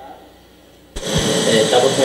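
Faint room tone, then about a second in a recording of a man's spoken testimony starts playing, with a steady hiss under the voice.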